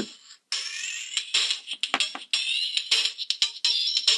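Circuit-bent toy guitar's electronic sound chip playing its built-in rhythm pattern, thin and high with almost no bass, cutting in about half a second in. Its speed and pitch are set by a 1-megohm potentiometer wired in as a voltage divider.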